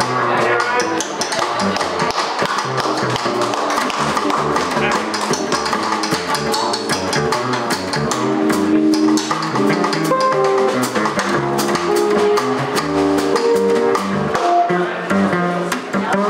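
Small jazz group playing live: a plucked upright double bass with a hollow-body electric guitar and a drum kit, its cymbals struck steadily throughout.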